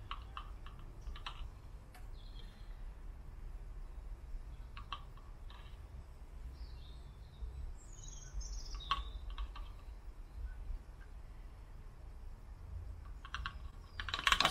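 Sporadic small plastic clicks and taps as a plastic straw is dipped into a car's coolant expansion tank and knocks against the neck of a plastic bottle while coolant is transferred, over a steady low background rumble. A few faint high chirps come near the middle.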